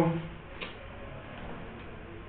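A man's drawn-out spoken "so" trails off, then a quiet room with a few faint, irregular ticks.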